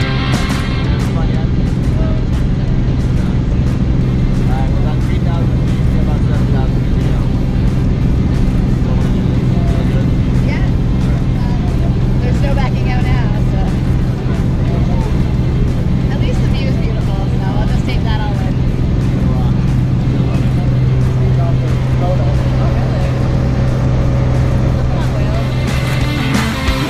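Small propeller plane's engine droning steadily, heard from inside the cabin, with faint voices underneath.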